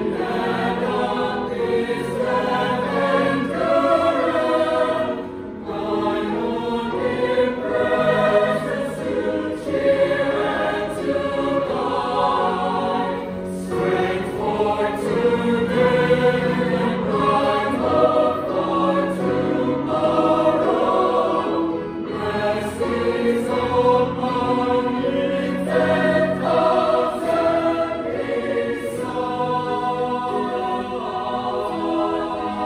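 Mixed choir of men's and women's voices singing in harmony, with brief breaks between phrases.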